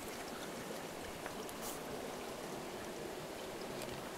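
Steady sound of running water, with a few faint taps.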